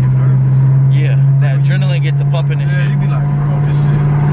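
5.7-litre HEMI V8 of a 2014 Dodge Challenger R/T droning inside the cabin, holding a steady engine speed.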